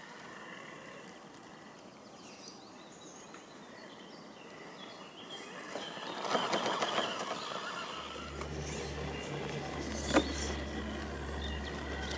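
Scale RC rock crawler's electric motor and drivetrain whirring as it climbs bare rock, tires scrabbling over grit, loudest around six seconds in. A low steady hum joins after about eight seconds, and there is a single sharp click a little after ten seconds.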